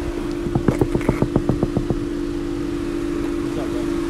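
Rapid knocking on a car's side window, about a dozen quick raps in a second and a half, over a steady hum.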